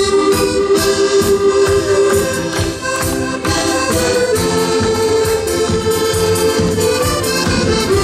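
Several accordions playing a tune together live, with held chords over a steady beat.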